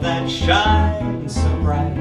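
Live jazz: a male voice sings a wordless, bending line over plucked double bass notes.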